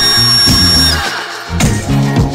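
Dance music played from a 7-inch vinyl single on a DJ turntable, with a bass line and drums. A high held tone cuts off just under a second in, the bass drops out briefly, and then the beat comes back near the end.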